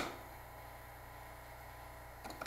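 A single sharp switch click as the power supply is turned on to drive current through the copper coil, then a faint, steady low electrical hum.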